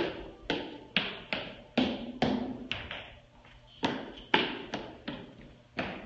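A child's running footsteps thudding on rubber gym flooring, an irregular series of about two strikes a second with a short pause midway, each echoing briefly in the large hall.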